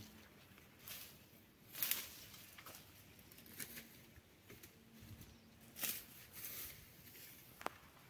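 Long-handled hand tool cutting through weeds and brush while clearing undergrowth: a few separate swishing, rustling strokes spaced unevenly, the strongest about two seconds in and about six seconds in, and a sharp click near the end.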